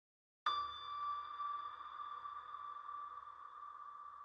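A sustained electronic ringing tone, struck suddenly about half a second in and slowly fading, used as a logo sting sound effect.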